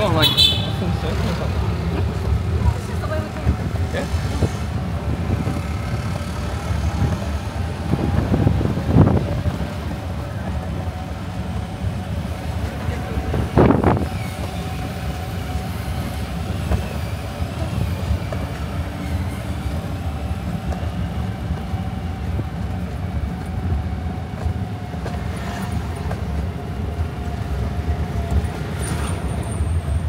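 Steady low rumble of a motorised tricycle riding along a road, heard from inside the cab, with a faint steady hum and a few short knocks from the cab as it goes.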